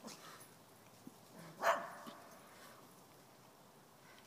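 A dog barks once, short and sharp, just before the middle, with a fainter sound right at the start.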